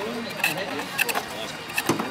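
Foot-treadle pole lathe being worked, giving a sharp wooden knock with the treadle strokes, about four knocks in two seconds.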